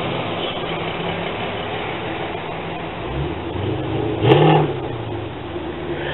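Road traffic: a car engine running steadily and speeding up about three seconds in. A short, louder sound comes just after four seconds.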